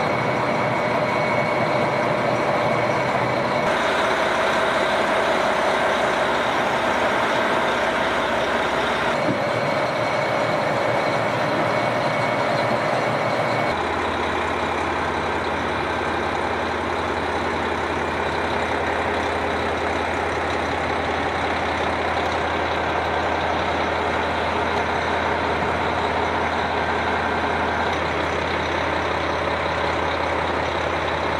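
JR Hokkaido KiHa 261 series diesel train idling at the platform, a steady engine hum. The sound shifts abruptly a few times, at about 4, 9 and 14 seconds in.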